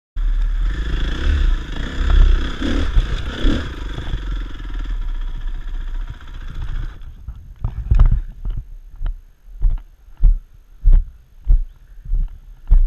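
Dirt bike engine running, then cutting out suddenly about seven seconds in. After that come regular dull thumps, roughly three every two seconds.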